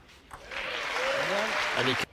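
An arena crowd applauding and cheering after a table tennis point is won, starting about half a second in, with shouting voices rising and falling over it. It cuts off suddenly at the end.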